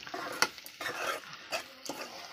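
A metal ladle scraping and knocking against an aluminium kadai as carrot poriyal is stirred: a run of short scrapes with a few sharp clicks.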